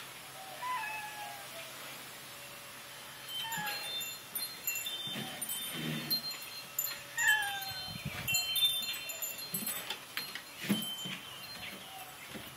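Wind chimes ringing with several overlapping high tones. Three short falling animal cries, about three seconds apart, and a few light knocks near the end.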